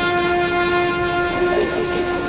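Brass instruments of a military band holding long, steady notes, the sound wavering and breaking up near the end.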